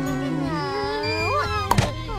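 A cartoon character's drawn-out, cat-like vocal whine over background music, rising in pitch near the end, followed by a short knock.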